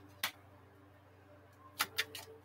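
Playing cards being handled: a short sharp snap of cards about a quarter second in and two more near the end, with a faint steady hum between.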